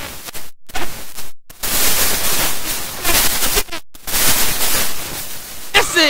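Gymnasium crowd cheering loudly after a made three-pointer, broken by three brief dropouts in the audio.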